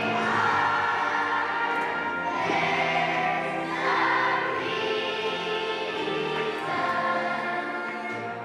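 Large children's choir singing, with notes held for a second or two at a time.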